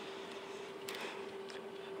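A faint steady hum at one pitch, with a light click about a second in.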